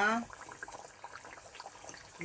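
Tempura-battered pineapple rings deep-frying in hot oil in a small saucepan: a steady crackling sizzle with many fine pops.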